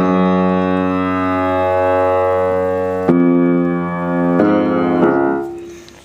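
Piano chords struck and held. The first chord rings for about three seconds, and new chords come in at about three seconds, four and a half seconds and five seconds, then die away near the end. This is the chord change leading from the bridge back into the hook.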